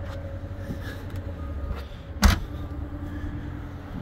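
Electric power-liftgate motor humming steadily as the gate closes, then a single loud thump a little past two seconds in as it latches, followed by a lower steady hum.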